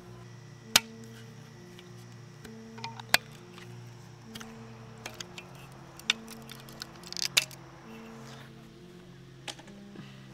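Soft background music of slow, sustained notes, with about five sharp plastic clicks spread through it as orange plastic shipping clamps are pried off a paramotor's metal frame.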